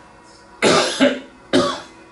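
A man coughing three times in quick succession, about half a second apart, starting about half a second in.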